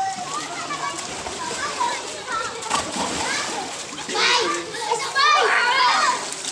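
Children shouting and chattering over water splashing in a shallow pool, with shrill shrieks loudest in the last two seconds.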